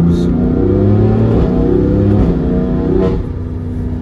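BMW S55 twin-turbo inline-six heard from inside the cabin, accelerating under throttle: the engine note climbs, changes about a second and a half in, climbs again, then eases off about three seconds in.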